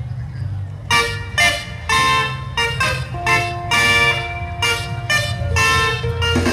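Vehicle horns honking in a run of short, loud toots at differing pitches, about two a second, starting about a second in, over a steady low rumble.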